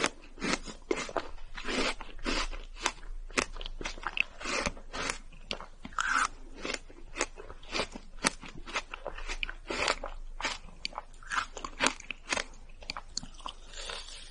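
Close-miked mouth sounds of chewing a bite of ice cream bar: a fast, irregular run of sharp clicks, several a second.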